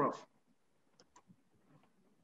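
Two faint, sharp clicks about a fifth of a second apart, about a second in, with a fainter tick or two after, over near silence.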